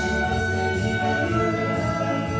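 Country-folk band playing: a harmonica holds long notes over electric guitar accompaniment.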